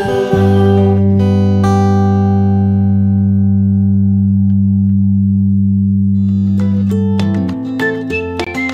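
A band's final chord held on keyboard and guitar, ringing steadily and slowly fading after the singing ends. Near the end a light plucked-string tune starts.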